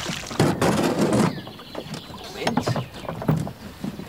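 Oars of a small wooden rowboat dipping and splashing in the water as the boat is rowed, in irregular strokes.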